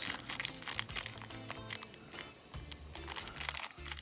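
Background music, with a small clear plastic bag of coins crinkling as gloved hands handle it.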